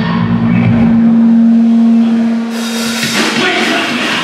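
Live punk rock band: a single amplified note held and ringing steadily for about three seconds, then drums and distorted electric guitars come back in at full volume about three seconds in.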